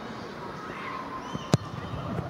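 A rugby ball kicked off a tee for a conversion: one sharp boot-on-ball strike about one and a half seconds in, over a steady low murmur of a stadium crowd.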